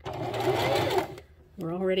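Electric domestic sewing machine stitching fabric in a short burst of about a second, its motor whine wavering slightly, then stopping.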